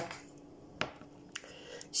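Three faint clicks of hands and fingernails handling a porcelain Turkish coffee cup, the first the loudest.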